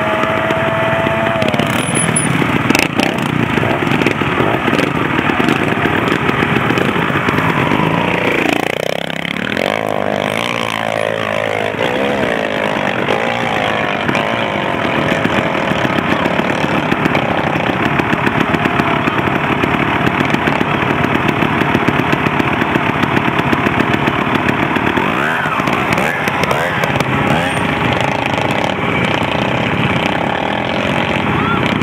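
Trials motorcycle engine revving hard and blipping as the bike climbs a steep rocky slope, the pitch rising and falling repeatedly, with a run of quick rev sweeps about a third of the way in.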